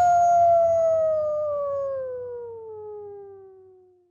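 A single long wolf-like howl with no music under it. It holds its pitch at first, then slides slowly down while fading out near the end.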